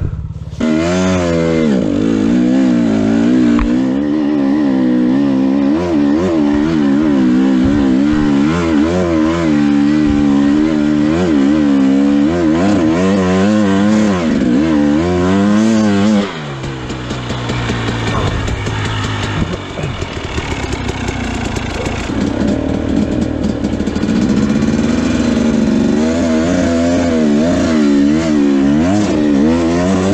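2017 Husqvarna TE 250 two-stroke enduro engine under load. It starts at a low idle, then revs up about half a second in, with the revs rising and falling in quick, uneven waves as it is ridden. About halfway through the revs drop to a lower, rougher note for several seconds, then pick back up with the same wavering towards the end.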